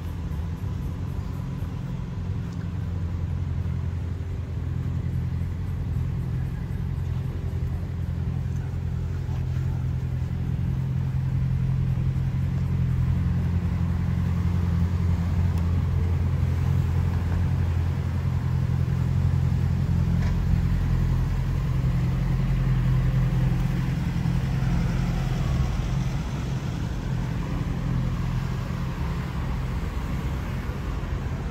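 Street traffic: cars running and driving past on the road, a steady low rumble that swells through the middle and eases off near the end.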